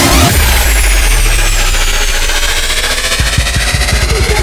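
Electronic dance music at a breakdown in a continuous DJ mix. The kick drum drops out just after the start, leaving a sustained low bass drone under a high-pitched sweep that falls slowly. The kick comes back in about three seconds in.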